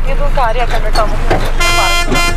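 Street traffic: a steady low engine rumble with voices calling, and a car horn starting to sound about one and a half seconds in and holding.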